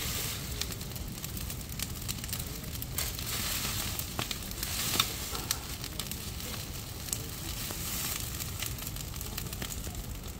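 Garden bonfire of freshly cut weeds and brush burning with a steady hiss and scattered sharp crackles.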